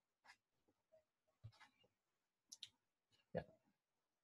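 Near silence with a few faint, short clicks, two of them close together about two and a half seconds in. A quiet spoken "yeah" comes near the end.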